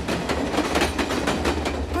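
Passenger train passing close by: a loud, rushing run of wheel-on-rail clatter.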